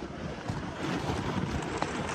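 Steady rushing noise of wind on the microphone, mixed with the scrape of a loaded gear sled being dragged over snow, with a faint click near the end.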